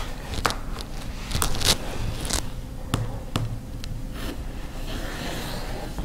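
Rotary cutter trimming a quilt block against an acrylic ruler on a cutting mat: short scratchy cutting strokes and clicks at irregular intervals as the blade runs through the fabric and the ruler is handled.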